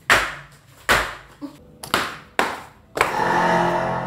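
Four sharp hits, each ringing out briefly, come roughly a second apart. About three seconds in they give way to a loud, sustained sound that holds several steady tones.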